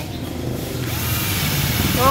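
Makita 12V Ni-MH cordless drill boring an 8 mm bit into hard wood. The motor runs steadily, and about a second in the hissing cut of the bit in the wood grows louder.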